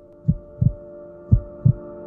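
Heartbeat sound effect: low double thumps, two lub-dub pairs about a second apart, over a sustained chord that slowly swells.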